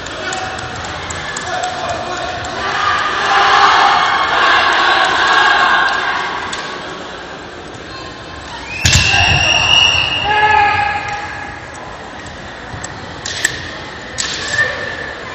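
Kendo bout: bamboo shinai clacking and striking, with the fighters' kiai shouts. About nine seconds in a sharp hit comes with a long high-pitched shout, and short sharp clacks follow near the end.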